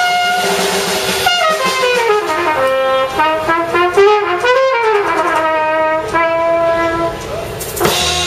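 Trumpet playing a solo line of notes that climb and fall, with the bass and drums mostly dropped out. The full band comes back in with a drum hit near the end.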